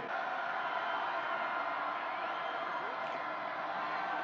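Stadium crowd noise at a football game: a steady din of many voices with no single cheer standing out.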